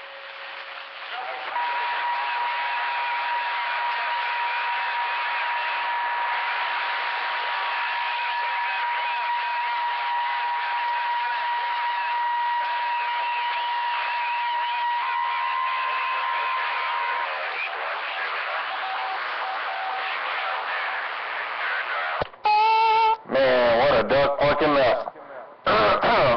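CB radio receiver on channel 28 putting out dense static with garbled, overlapping distant voices and a steady whistle, a jumbled pile-up in poor band conditions, a 'mess' and a 'train wreck' in the receive. Near the end a short tone sounds and then a strong voice comes through.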